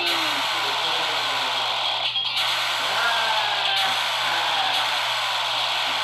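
A cartoon energy-beam blast sound effect: a sustained hiss full of repeated falling sweeps, breaking off briefly about two seconds in.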